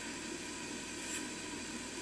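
A pause between words: only a faint, steady hiss, the background noise of the video-call line.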